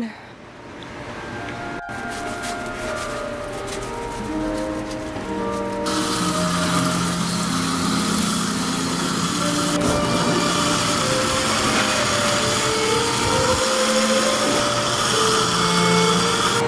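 Background music with soft, held notes. A garden hose spray nozzle hisses under it, starting abruptly about six seconds in.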